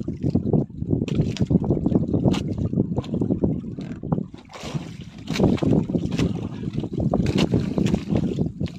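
Wind rumbling on the microphone and sea water washing against a small wooden outrigger boat, swelling and fading in gusts, with scattered sharp knocks.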